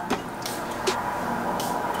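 Perfume bottle's spray pump misting in short hissing bursts, the clearest about a second and a half in, over a steady background hiss.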